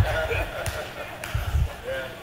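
A few low thuds of footsteps on a stage, with faint voices from the room in between.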